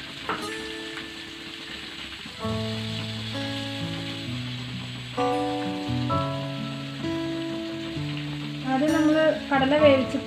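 Aromatics frying in oil in an aluminium wok, sizzling steadily, under background music of held notes that change every second or so. A voice comes in near the end.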